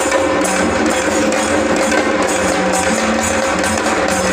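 Live traditional Maharashtrian drumming: several barrel drums struck with sticks in a fast, steady rhythm, with bright metallic strokes about twice a second and a steady held tone underneath.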